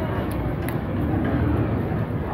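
Indistinct voices of people nearby over a steady low rumble.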